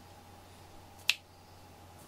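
A single short, sharp click about a second in, over a faint steady hum.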